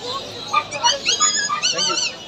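Husky puppies whimpering and yipping: a run of short, high-pitched whines starting about half a second in, some held steady and some wavering up and down in pitch.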